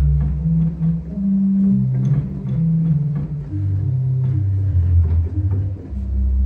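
1926 Estey pipe organ, Opus 2491, sounding its 8-foot Bass Flute pedal stop: a run of low held notes that steps downward, with light clicks between the notes.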